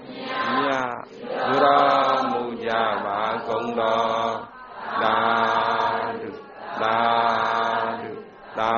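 A voice chanting Burmese Buddhist chant in long, held phrases with short breaks between them, closing the dhamma talk.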